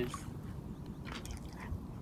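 Faint water sloshing around a toddler's legs as he wades in shallow lake water, over a low steady rumble, with a few faint small splashes about a second in.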